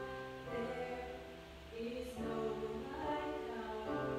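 A woman singing a slow song while accompanying herself on a Kawai digital piano, with a brief lull about halfway.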